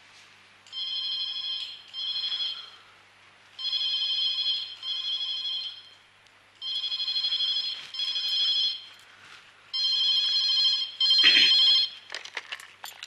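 Landline telephone ringing in a double-ring cadence: four pairs of rings, each pair about three seconds after the last. The last pair is followed by a short clatter as the handset is lifted.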